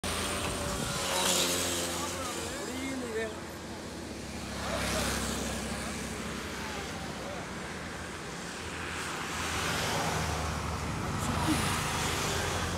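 Road traffic passing close by on a highway, vehicles going by in swells about a second in, around five seconds and again near the end, with motorcycles among them.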